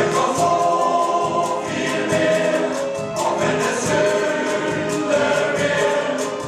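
Male voice choir singing, holding long notes that change every second or two.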